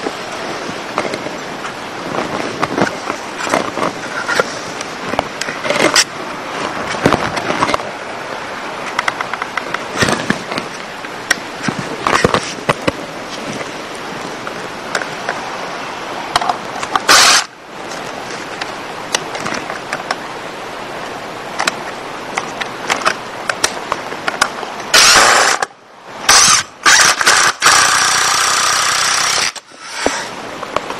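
Cordless drill drilling through a fence picket into the rail, run in short trigger bursts: once about halfway through, then several bursts that stop abruptly near the end. Clicks and knocks from handling the picket and drill come in between.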